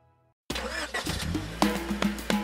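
Silence for about half a second, then a car engine sound effect starts suddenly and runs with a low rumble, as the music of a children's song comes in near the end.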